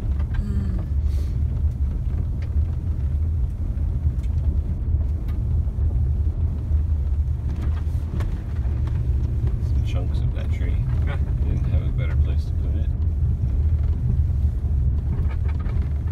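Car driving on a dirt road, heard from inside the cabin: a steady low rumble of tyres and engine with occasional small clicks and rattles.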